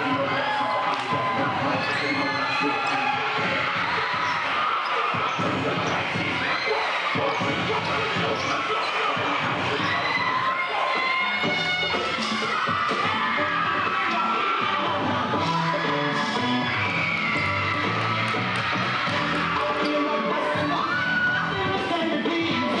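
Dancers' feet stomping and striking a wooden stage floor during a drill-team routine, over an audience cheering and shouting. Music with a bass line runs underneath, stronger from about halfway.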